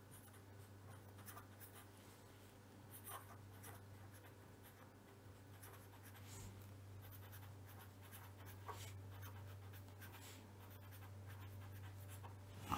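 Faint scratching of a pen writing on paper in short, irregular strokes, over a low steady hum.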